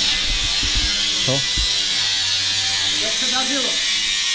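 Steady buzz of a small electric motor running throughout, with a high hiss, under a couple of short spoken words.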